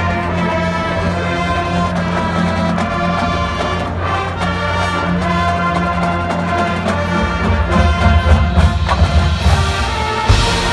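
A full marching band, brass with field and pit percussion, playing a loud held chordal passage. About seven seconds in the low drums come in harder with strong accented hits, and cymbals wash in near the end.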